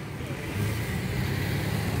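The 2.3-litre four-cylinder engine of a 2003 Ford Focus, idling with a steady low hum.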